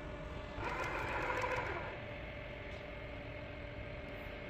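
ABB YuMi collaborative robot's arm motors running its program at reduced speed in manual mode: a steady low hum with a louder whirring swell lasting about a second, starting about half a second in.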